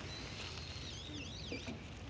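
A bird calling outdoors: a held high whistled note, then a quick run of warbling up-and-down notes, over a steady outdoor hiss.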